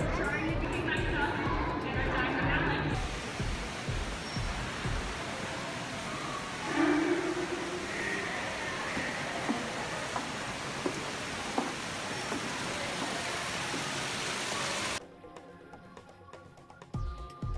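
Faint voices of people in a large hall, then a steady, loud rushing of water that cuts off suddenly about a second before the end.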